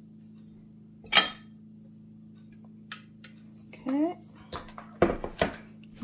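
Kitchen clatter from handling a small slow cooker while pouring its contents into a cheesecloth-lined glass measuring jug: one sharp, ringing clank about a second in, then a few knocks near the end as the slow cooker is set down. A steady low hum runs underneath.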